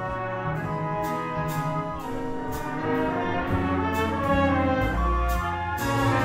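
A jazz big band playing, with trumpets and trombones carrying held chords over a bass line, and a cymbal striking about twice a second to keep time. The band grows louder about three seconds in.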